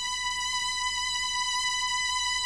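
A single held musical note at a steady pitch, slowly getting louder, with a faint low hum beneath it.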